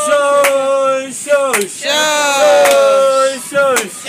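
Children's voices calling out a name together in long, drawn-out shouts, each call held and then falling away in pitch, with a few sharp claps in between.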